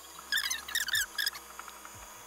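Short, high squeaks in two quick clusters, near the start and again near the end, as the toy hauler's lift-style top bunk is raised toward the ceiling.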